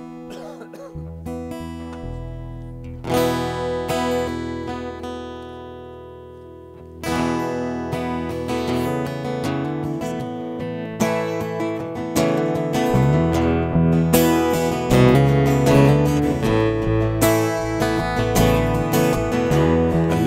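Acoustic guitars playing the instrumental intro of a slow country song: a strummed chord rings out about three seconds in and fades, then steady strumming and picking start about seven seconds in and grow fuller and louder.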